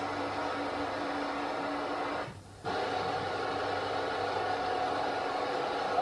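A steady machine hum with a faint constant tone, cutting out briefly about two and a half seconds in.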